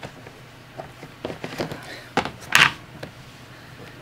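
Plastic storage tub and lid being handled: a few light knocks and clicks, then a louder short scrape about two and a half seconds in.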